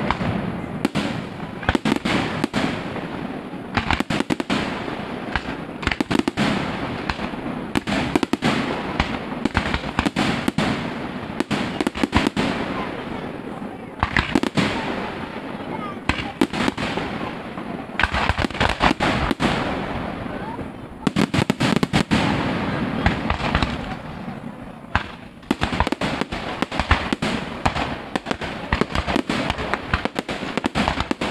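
Fireworks display: a dense, continuous run of sharp bangs and crackling from aerial bursts and fountains, with the loudest volleys in the second half.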